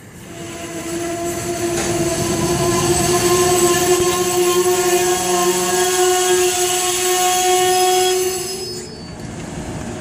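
Amtrak passenger cars rolling past as the train pulls in, their wheels squealing in several steady high tones over the rolling rumble. The squeal builds over the first few seconds and dies away about eight and a half seconds in.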